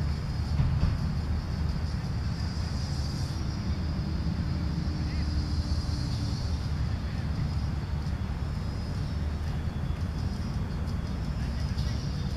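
Steady low outdoor rumble with faint, indistinct voices in the distance.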